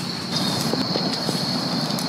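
Steady outdoor background noise picked up by a smartphone microphone, a low rumble with a thin, steady high tone running through it.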